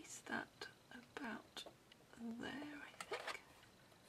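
Quiet murmured speech: a few soft words spoken under the breath.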